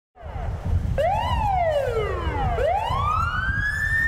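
Ambulance siren wailing in slow rising and falling sweeps, each rise or fall lasting about a second and a half, over the low rumble of idling traffic.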